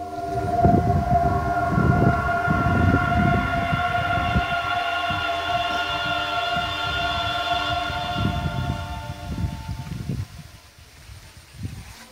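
A steady, unwavering tone with overtones, held for about ten seconds before fading out, over an irregular low rumble.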